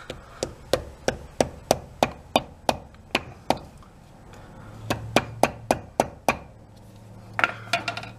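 Small hammer tapping a hickory wedge into the slot in the top of a ball peen hammer's wooden handle, to tighten the loose head. The taps are light and quick, about three to four a second: a run of about a dozen, a short pause about halfway, then another run.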